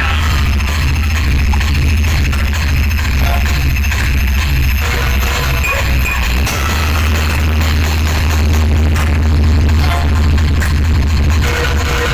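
Electronic dance music played very loud through a large outdoor DJ sound system of stacked horn speakers and bass bins, with heavy, continuous bass and a steady beat. The bass briefly breaks about six and a half seconds in.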